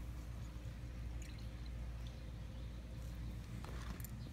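Faint dripping of diluted muriatic acid from a piece of coral held in metal tongs over a plastic tub, with a few small drips about a second in and again just before the end, over a steady low rumble.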